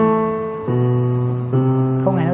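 Piano played slowly: three low notes of the left-hand bass line struck one after another, a little under a second apart, each ringing on into the next.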